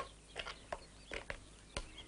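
A few scattered light knocks and clicks as a wooden camera tripod is carried, set down and its legs adjusted, with faint bird chirps behind.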